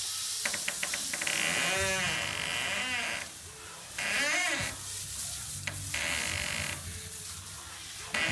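Garden hose spray nozzle spraying water onto a horse and wet concrete, a steady hiss that swells and dips as the spray is moved. A few short wavering high-pitched calls sound over it, around two and four seconds in.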